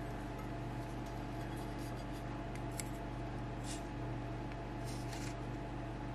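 Soapstone marker in a steel holder writing on a hard surface: a few faint, light scrapes and ticks over a steady low electrical hum.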